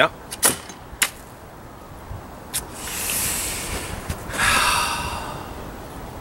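Two sharp knocks, half a second apart near the start, as the hatchet head of a cheap 6-in-1 camp tool strikes. A lighter click follows about two and a half seconds in, then two loud breathy rushes of noise, each about a second long.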